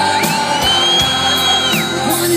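Rock band playing live through a festival PA, heard from within the crowd. A high shrill whoop from a nearby fan rises in pitch just after the start, holds for about a second and a half, then drops off.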